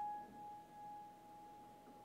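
A single high grand-piano note, struck just before, rings on faintly and slowly dies away.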